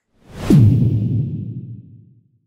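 Whoosh transition sound effect: a short rising swell that lands on a deep hit about half a second in, its pitch dropping, then dies away over about a second and a half.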